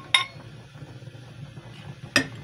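A glass pitcher clinks once against a plastic jug just after the start, ringing briefly, followed by a faint, steady pour of milk onto cornstarch.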